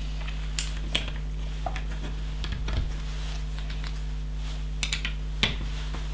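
Plastic LEGO bricks clicking and clattering as hands pick through a loose pile on the table and press pieces onto a build: scattered, irregular light clicks. A steady low hum runs underneath.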